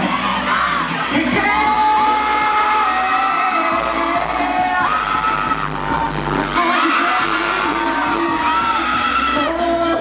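Live pop song played loud through a stage sound system, with a singer's held melody over a steady low beat, recorded from among the audience.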